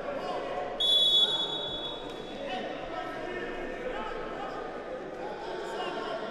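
A referee's whistle blown once, about a second in: a short, shrill blast that fades out over the next second, over a background of voices in the hall.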